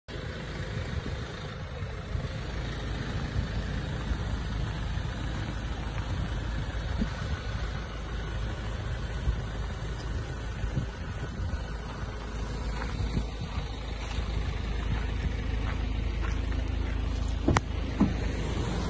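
Ford Ranger's 2.2 TDCi four-cylinder diesel idling steadily as a low rumble, with a sharp knock near the end.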